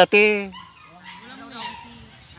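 Two short, loud cries right at the start, the second dying away about half a second in, followed by faint voices.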